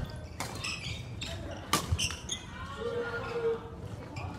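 Badminton rally in a large gym: several sharp racket hits on the shuttlecock, the loudest a little under two seconds in, with players' footsteps on the wooden court.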